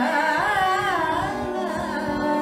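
A woman singing one long ornamented phrase of Indian classical vocal music, her pitch curving up and down, that fades near the end, over a steady drone, with soft tabla strokes beneath.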